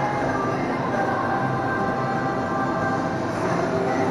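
Steady restaurant background din: a constant hum and murmur with no distinct events.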